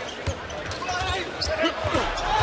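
Basketball being dribbled on a hardwood court: a run of short, low bounces over the murmur of an arena crowd.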